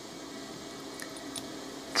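Faint small metallic ticks, one about a second in and another shortly after, as the chrome back handle of a Harder & Steenbeck Evolution airbrush is slid on over the needle chuck.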